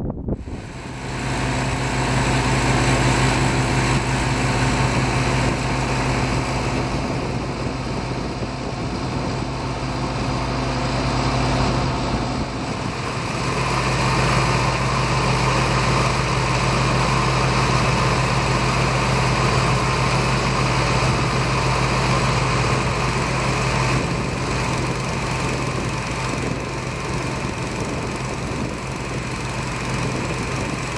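A small engine running steadily at a constant speed, with a slight change in its tone about halfway through.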